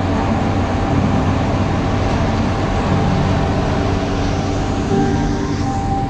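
Steady, loud engine noise from heavy diesel machinery and passing road traffic: a continuous low rumble with a broad roar over it.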